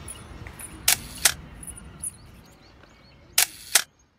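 Camera shutter firing twice, each time as a quick double click, about two and a half seconds apart. Underneath is a faint outdoor background that fades away near the end.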